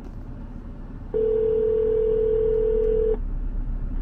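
Telephone ringback tone from a phone on speaker: one steady two-second ring starting about a second in. It is an outgoing call ringing and not yet answered. A low hum from the car cabin runs underneath.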